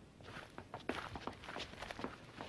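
Footsteps of several people walking on stone paving: a quick, irregular run of soft steps that overlap as the group moves.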